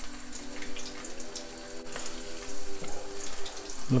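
Battered whitebait deep-frying in hot oil: a steady sizzle with small crackles and pops.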